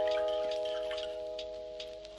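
A bell-like chime chord of several tones, struck just before and ringing on as it slowly fades, with faint high ticks above it.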